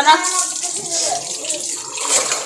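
Water running steadily from a kitchen tap into a sink.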